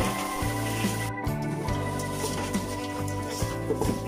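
Background music with sustained chords whose low notes change every second or so, with a brief dropout about a second in.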